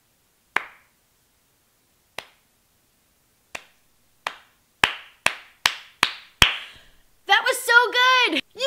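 Hand claps, slow and spaced at first, then quickening to a steady two or three a second, nine in all; a woman's voice comes in near the end.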